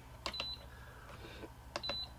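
Keypad of a 7500 Rev 2.5 water softener control valve: two button presses, each a click followed by a short high electronic beep, about a second and a half apart.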